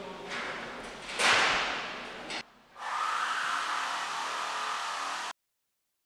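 Whoosh transition effect about a second in, fading away, followed by a steady hiss-like tone that cuts off abruptly to silence near the end.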